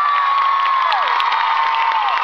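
A large audience screaming and cheering loudly, with long, high-pitched screams that hold and then trail off, one falling away about a second in.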